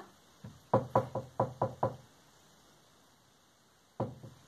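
Knocking, as at a door: a quick run of about six knocks in about a second, starting under a second in.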